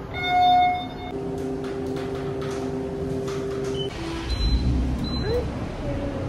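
Elevator chime: one loud ringing tone lasting under a second at the start, followed by a steady hum for about three seconds.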